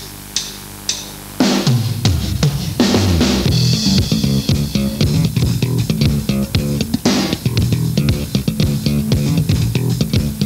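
Funk band's instrumental intro: after a few light clicks, drum kit, bass guitar and guitar come in together about a second and a half in and play a steady rhythmic groove.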